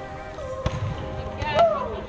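Volleyball players' voices calling out during a rally, with a sharp hit of the ball less than a second in and a loud drawn-out call near the end.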